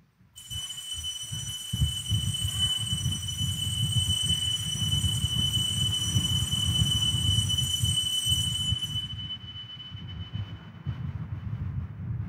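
An altar bell rung once at the elevation of the consecrated host, one high ring that fades slowly over about ten seconds, over a steady low rumble.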